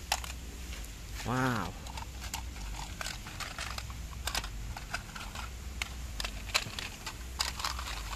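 Toy cars and buses clicking and clattering against each other and a plastic basket as a hand drops them in and shuffles them: a quick, irregular run of small clicks. A short rising-and-falling voice-like call about a second and a half in.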